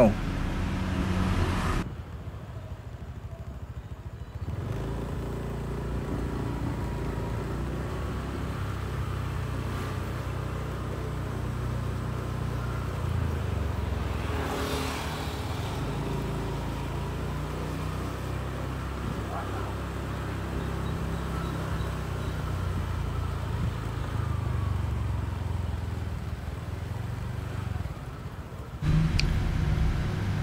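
A motor vehicle engine running with a steady low rumble. About halfway through there is a brief louder swell as a vehicle passes.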